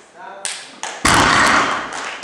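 A loaded 260 kg deadlift barbell set down on the platform with a heavy thud about a second in, as the crowd shouts and cheers.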